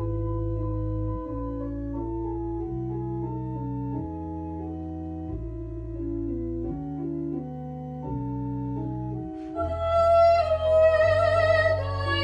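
Two-manual console organ playing a slow introduction of held chords over a deep pedal bass, the chords changing every second or so. About nine and a half seconds in, a woman's voice begins singing with vibrato over the organ.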